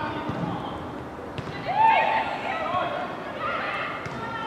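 Women's voices shouting and calling across a football pitch during play, loudest in one long rising-and-falling shout about two seconds in. A single sharp knock comes just before that shout.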